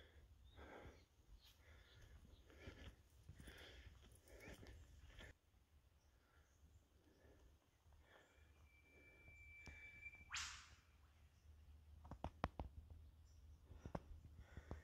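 Near silence on a bush trail: faint scattered rustles and clicks, a thin steady whistle for about two seconds, then a brief sharper sound about ten seconds in.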